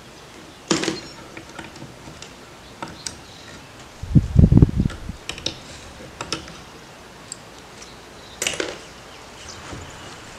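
Gloved hands handling small metal carburetor parts on a plywood bench: scattered light clicks and taps, with a dull low thump about four seconds in.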